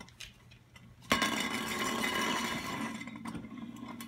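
Tin spinning top on a wooden floor: about a second in, a ringing metallic rattle starts suddenly as the top tips onto its rim, then slowly fades.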